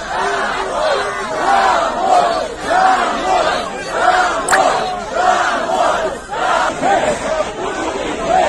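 A large crowd of protesters shouting together, many voices overlapping and surging up and down in loudness.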